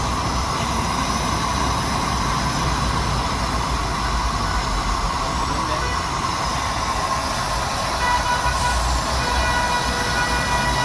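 Bucket flame treatment machine running: a steady, loud noisy roar with a low rumble from its gas torch and drive. Faint high steady tones join about eight seconds in.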